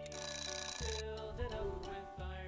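A bell-like ringing sound effect lasting about a second and cutting off suddenly, marking the end of a countdown timer, over soft background music with steady held notes.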